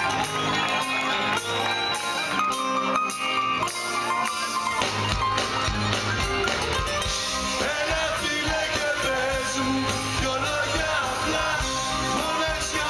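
Live Greek laïko band music played through a concert PA: electric guitars over a steady beat, with the bass and drums coming in much fuller about five seconds in.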